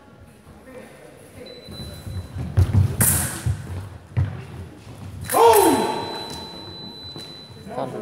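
Sabre fencers' quick footwork thumping on the piste in a large echoing hall. This is followed by one loud shout from a fencer with a falling pitch, while the electric scoring machine sounds a steady high beep for about two and a half seconds, signalling a touch.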